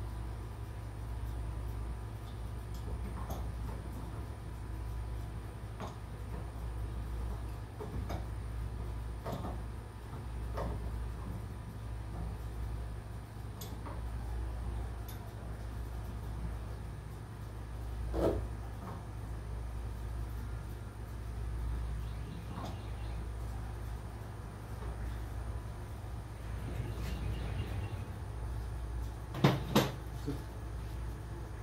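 Scattered light clicks and knocks of pliers on PVC plumbing fittings being worked on a plastic drum, over a steady low hum. One louder knock comes past the middle, and two sharp knocks come near the end.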